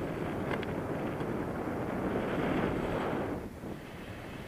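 Wind from the airflow of paraglider flight rushing over the camera's microphone: a steady rush that eases off about three and a half seconds in, with a few faint ticks in the first second or so.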